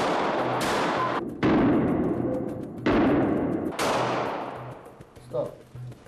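Four pistol shots, irregularly spaced about a second apart, each ringing out in a long echoing decay.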